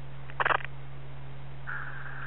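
Police scanner audio in a gap between radio transmissions. A steady low hum runs throughout, a short burst of noise comes about half a second in, and a steady higher-pitched hiss sets in near the end as the channel opens.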